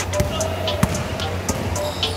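A basketball bouncing on an indoor court floor, with two clear thuds close together early on, and sneakers squeaking on the court, under steady background music.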